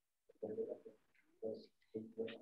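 A bird cooing faintly: three short, low calls.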